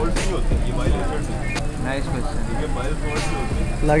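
Background chatter of several people talking, not close to the microphone, over a steady low hum, with a few faint clicks.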